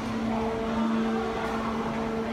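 A steady mechanical hum holding one constant low pitch, over a general background rumble.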